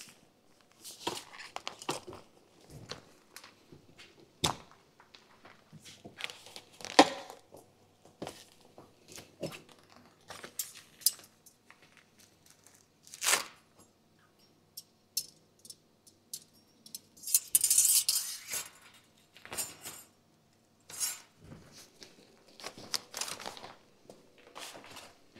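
Scattered clicks, light clinks and knocks from the roof tent's metal tensioning rods being handled and stowed, with a longer rustle of tent fabric about seventeen seconds in.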